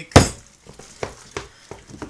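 A spoon knocking against a stainless steel mixing bowl while working a thick batter: one loud knock just after the start, then four lighter knocks.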